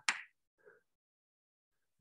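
Chalk tapping on a chalkboard while writing: a short sharp tap right at the start and a fainter one about half a second later, then near silence.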